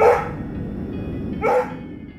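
A dog barks twice, once at the start and again about a second and a half later, with music underneath.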